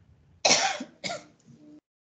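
A person coughing twice in quick succession over a video-call microphone, the first cough the louder.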